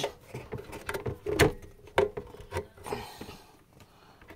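Irregular crackling and rustling clicks from a faulty microphone cable, heard through a channel of an Alto AMX-140 mixer. The noise comes from a poor contact in the cable, not from the mixer.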